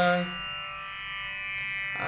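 A held sung note in a chant of Sanskrit verse ends just after the start, leaving a steady, buzzy accompanying drone alone in the pause; the next sung line begins right at the end.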